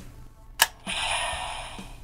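A sharp plastic click as the front plates of a Hasbro Lightning Collection Mighty Morphin Yellow Ranger Power Morpher toy open, about half a second in. The toy's electronic sound effect follows from its small speaker, a noisy sound with a high ringing tone that slowly fades.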